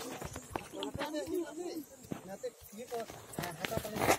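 Several people talking at once in background chatter, with scattered clicks and knocks from the phone being handled, the loudest near the end.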